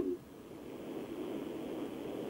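Faint, muffled hiss of an open telephone line carried on air, with a thin, narrow-band sound.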